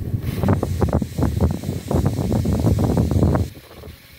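Wind buffeting the microphone: a loud low rumble in irregular gusts that drops away near the end.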